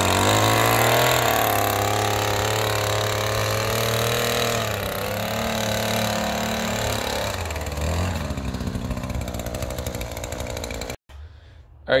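Shindaiwa M262 multi-tool's small two-stroke engine running steadily with the power broom attachment fitted. Its pitch dips around eight seconds in, and the sound stops abruptly about eleven seconds in.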